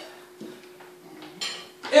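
A few faint clinks of tableware over a low steady hum, then a voice calls out just before the end.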